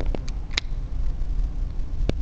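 Low, steady outdoor background rumble, with a few short clicks in the first second.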